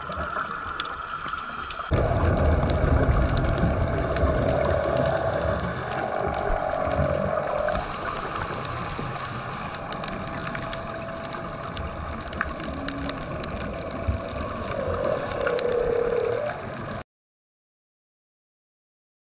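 Underwater recording of a scuba diver's exhaled bubbles gurgling and rushing past the camera, growing louder about two seconds in, with scattered faint clicks. It cuts off suddenly near the end.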